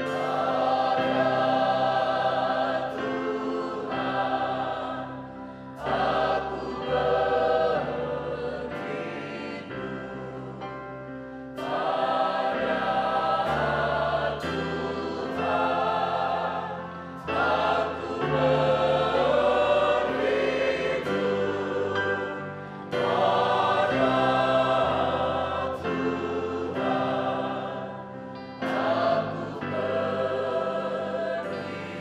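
Mixed choir of men and women singing a worship song in phrases of a few seconds, accompanied by a church band with keyboard, bass and drums.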